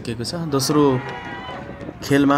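A man's voice speaking.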